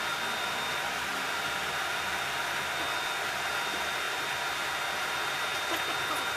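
Steady, even whooshing noise of a fan or blower-like machine, with a faint high steady tone riding over it.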